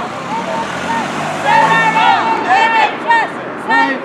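A road vehicle passing close by, its tyre and engine noise fading out about halfway through, over the voices of a crowd.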